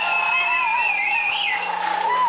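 Live band's amplified instruments holding sustained high tones that waver and glide up and down in pitch, over a steady low hum.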